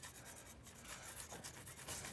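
Faint, irregular scratching strokes of a graphite stick rubbed over paper held against an old wooden door, taking a frottage of its surface.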